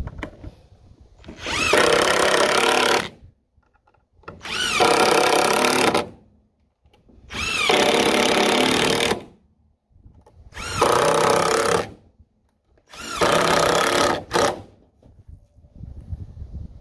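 Cordless DeWalt impact driver sinking long screws into pressure-treated lumber: five runs of about one and a half to two seconds each with short pauses between, one for each screw. A brief extra burst follows the last run.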